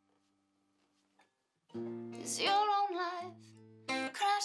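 Acoustic guitar and female singing: a held guitar chord fades almost to silence, then a little under halfway through a new chord is strummed and the singing voice comes back in.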